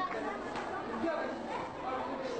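Chatter of several children's voices talking at once, with no single clear speaker.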